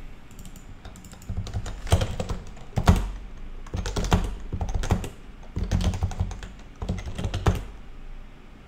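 Typing on a computer keyboard: bursts of rapid keystrokes separated by short pauses, starting about a second in, with the sharpest strokes around two and three seconds in.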